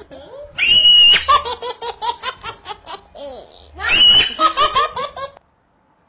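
A person laughing hard in two bouts of rapid, high-pitched ha-ha-ha pulses that cut off abruptly shortly before the end.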